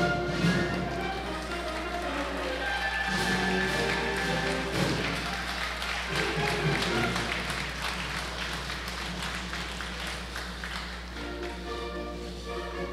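An audience clapping steadily over orchestral music.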